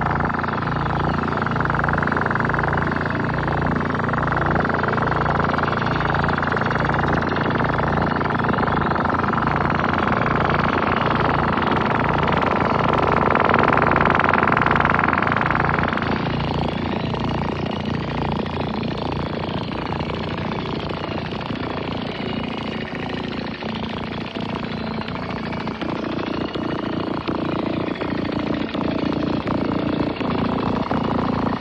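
Experimental electronic noise: sound fed through a Yamaha CS-5 synthesizer's external input, heavily filtered and LFO-modulated into a pulsing low throb under a bright hiss band. The hiss band cuts off about halfway through, leaving wavering, sweeping filtered tones over the throb.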